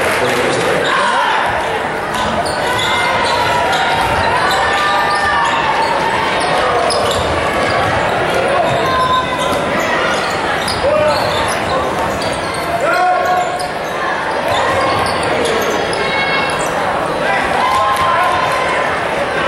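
Basketball game in a gym: a ball bouncing on the hardwood court amid the voices of players and spectators, all echoing in the large hall.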